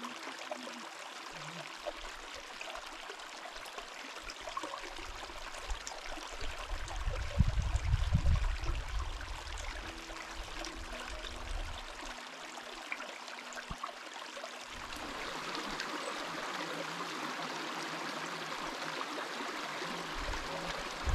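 A small, shallow mountain creek running over rocks, a steady trickling rush. About seven seconds in, a low rumble rises over it for a couple of seconds, and from about fifteen seconds in the water sound becomes louder and brighter.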